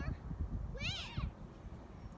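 An animal's meow-like call, one pitched cry that rises and then falls, about a second in, with low rumbling underneath.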